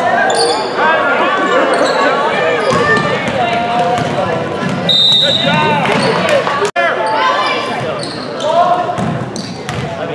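Voices of players and spectators calling out over one another in an echoing school gym, with a basketball bouncing on the hardwood floor. A short high tone sounds about five seconds in, and the sound cuts out for an instant at an edit shortly after.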